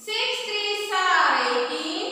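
A woman's voice chanting a line of the three-times table in a sing-song, drawn-out way, in two phrases with a short break about a second in.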